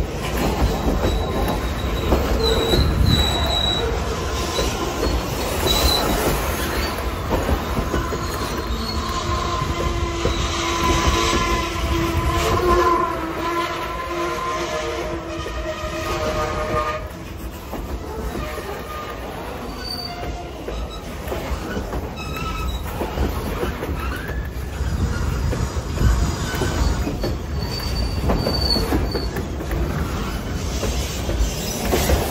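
Freight train of boxcars rolling past close by: a steady rumble and clatter of steel wheels on the rails, with brief high wheel squeals now and then. A held chord of several tones sounds for several seconds in the middle and cuts off sharply.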